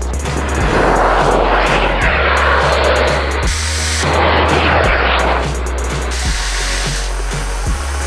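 A small rocket motor strapped to a toy excavator firing with a loud rushing hiss for about five seconds, dipping briefly midway, over background music with a steady beat.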